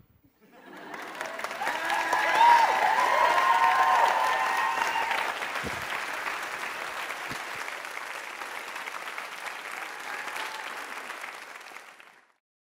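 Audience applause that swells over the first couple of seconds, with whoops near its height, then slowly eases off.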